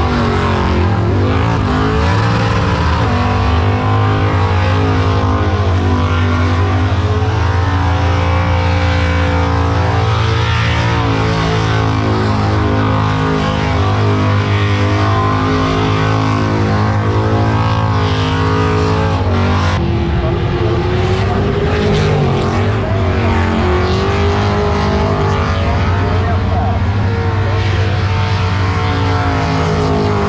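Car engine held high in the revs through a burnout, with tyre noise under it. The engine note stays steady, then drops and wavers about two-thirds of the way through.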